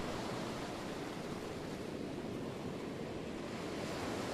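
Steady, even rushing noise with no distinct events or tones, at a constant level throughout.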